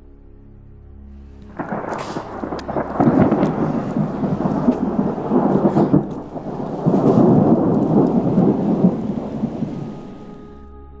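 Thunder rumbling loudly in two long swells with a few sharp cracks. It begins about a second and a half in and fades near the end.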